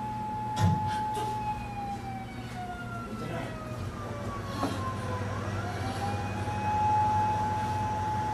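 A long, sustained siren-like tone that holds steady, slides slowly down in pitch over a few seconds, then rises back and holds again. A second, higher tone glides downward alongside it over a low steady hum, with a soft thump about half a second in.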